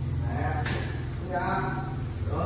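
Pomeranian puppy whining: two short high cries, the second and louder about one and a half seconds in, over a steady low hum.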